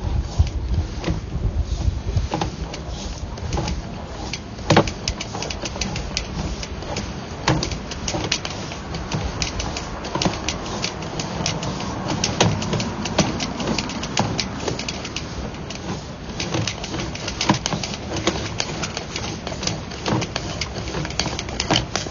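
Sewer inspection camera and its push cable being pulled back through a PVC sewer line, with irregular clicking and rattling over a low rumble.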